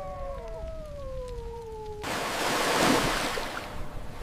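Cinematic disaster sound design: a low rumble under slowly falling, wavering tones, then about halfway a rushing noise swells up and fades away.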